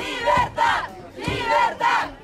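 A crowd of demonstrators shouting a protest slogan together, in two loud shouted phrases.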